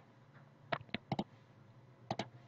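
About four quick, sharp computer clicks, between about three-quarters of a second and a second and a quarter in, over a faint steady low hum.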